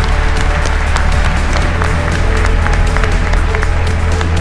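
Applause over background music with a steady low bass.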